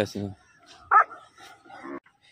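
A dog straining on its chain barks, one short sharp bark about a second in.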